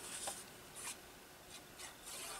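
Faint rustling and light scraping of a piece of paper being handled and turned over, with a few soft crinkles spread across the moment.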